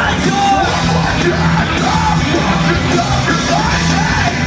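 Live hardcore rock band playing at full volume: electric guitars, bass and drums under a vocalist singing and yelling a melodic line, recorded from within the crowd.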